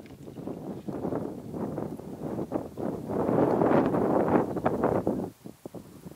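Gusty wind buffeting the microphone with a crackling rustle, building to its strongest about three to five seconds in and dropping away near the end.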